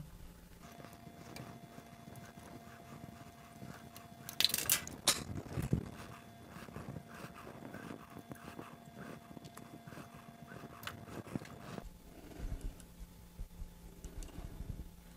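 Faint clicks and rubbing from fingers handling a 3D-printed plastic belt tensioner, toothed belt and M3 nut and bolt, with a cluster of louder clicks about four to five seconds in.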